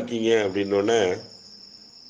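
A man speaking Tamil for about a second, then a thin steady high-pitched tone heard alone in the pause that follows.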